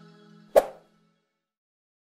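Closing background music fading out, then a single sharp mouse-click sound effect about half a second in.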